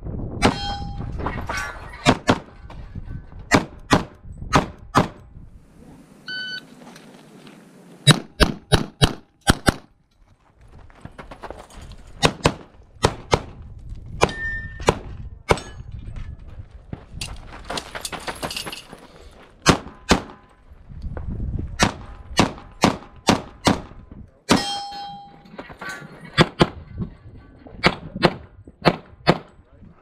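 Semi-automatic pistol firing strings of rapid shots with short breaks between them, some hits followed by a brief ring from steel targets.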